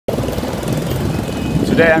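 Steady low rumble of dense motorbike and scooter traffic close by. A man's voice starts near the end.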